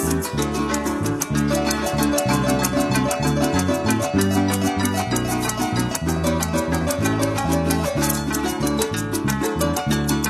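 Llanero joropo played live on harp, cuatro and maracas: an instrumental passage with a plucked harp melody and bass line over a fast, steady maraca rhythm.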